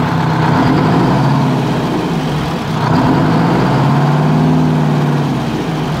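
Walter RDUL truck's eight-cylinder diesel engine running, missing on one cylinder because the two fuel lines were left off an injector. Its pitch rises briefly and settles back between four and five seconds in.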